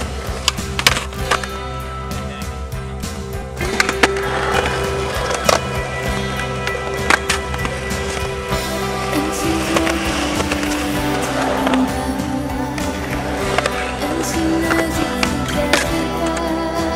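Skateboard on concrete: wheels rolling, with several sharp clacks of the board popping and landing, over music with sustained tones.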